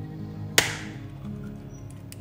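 An egg's shell cracked once, a single sharp crack about half a second in with a brief crackle trailing off, over background acoustic guitar music.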